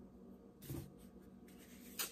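Quiet room with faint rustling, a little louder briefly a little after half a second in.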